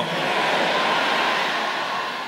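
A large congregation cheering and shouting together as one steady roar, which begins to fade near the end.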